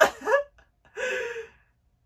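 A woman's short burst of laughter, then a breathy gasp about a second in.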